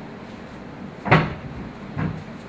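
A wooden door knocking shut about halfway through, then a lighter knock near the end.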